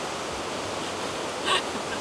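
Steady, even rush of water from a creek running through the gorge below.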